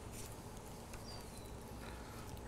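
Faint soft scraping and dabbing of a silicone spatula stirring scrambled eggs in a nonstick pan over very low heat, with a thin faint high whistle about a second in.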